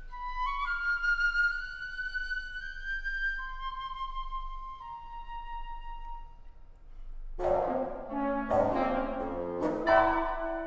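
Solo piccolo playing long, held high notes that step slowly from one pitch to the next. About seven seconds in, the ensemble enters suddenly with loud struck accents and full chords, a French horn among them.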